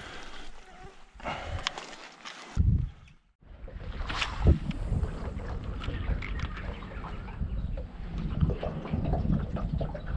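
Light water splashing and dripping beside a boat as a released flathead goes back into the river. A short cut about three seconds in, then steady wind rumbling on the microphone.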